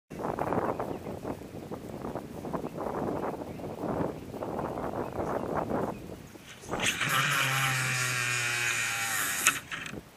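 Buffeting wind noise on the microphone, then a cast. From about seven seconds in, the Newell 338 conventional reel's spool spins free as braided line pays out, making a steady high buzz over a low hum for about two and a half seconds. It is cut off with a sharp click near the end as the spool is stopped.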